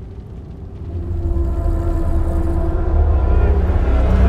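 Deep rumbling that swells about a second in and keeps building, with long held low tones over it: the film's sound design for the demons of Hell being summoned.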